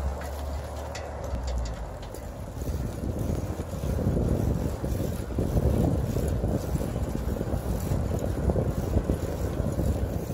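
Low rumbling wind noise on the microphone, with outdoor road noise as the camera moves along with the bicycle; it grows a little louder about three seconds in.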